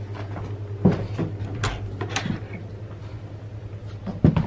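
A door being opened and handled: a few separate knocks and clicks over a low steady hum.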